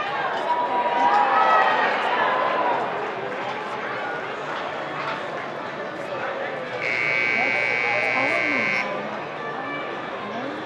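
Rodeo arena buzzer sounding one steady, high-pitched tone for about two seconds, starting about seven seconds in: the timer signal for the ride. Crowd voices and cheering run underneath, loudest in the first few seconds.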